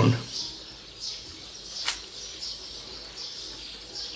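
Birds chirping faintly in the background, with a single sharp click about two seconds in.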